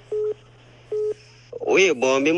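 Two short telephone beeps about a second apart on a phone-call line, each one steady pitch.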